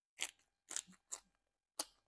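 About five short, crisp snapping clicks, irregularly spaced, two of them close together just under a second in.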